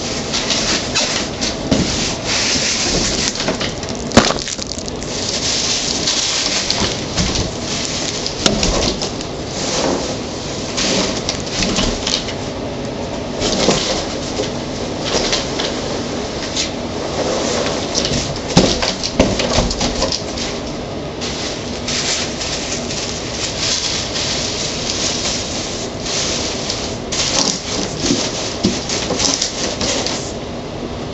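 Plastic wrapping and packing material rustling and crackling without a break as it is handled close by, with many sharp clicks and small knocks through it.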